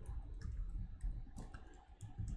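Computer keyboard keys being pressed: a few separate clicks, irregularly spaced about half a second apart, as characters are typed and deleted.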